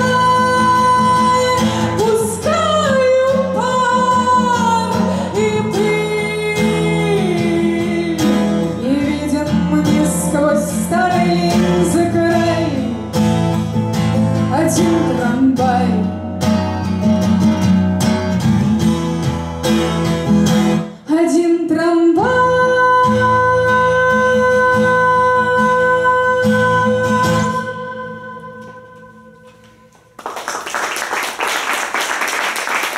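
Woman singing over a strummed twelve-string acoustic guitar. About two-thirds of the way through she holds one long final note for several seconds, then the guitar dies away near the end as the song closes.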